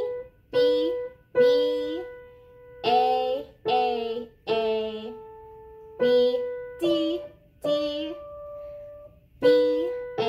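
Upright piano playing a simple melody one note at a time around the B above middle C, about ten notes with short gaps, while a woman's voice sings each note's letter name (B, A, G) along with it.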